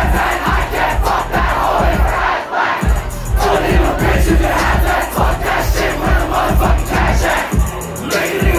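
A rap song played loud over a club PA with a heavy, pulsing bass beat, and a crowd shouting along. The bass cuts out briefly about two and a half seconds in and again near the end.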